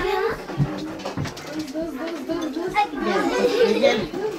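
Speech only: people talking in Turkish.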